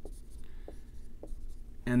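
A marker writing on a whiteboard: faint scratching strokes with a few light taps, before a man starts speaking near the end.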